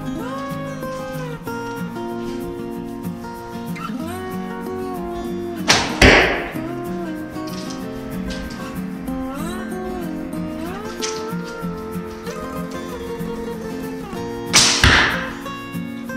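Two arrows loosed from a light, roughly thirty-pound Alibow horse bow, about nine seconds apart: each is a sharp snap with a short tail, one about six seconds in and one near the end. Guitar music plays steadily under both shots.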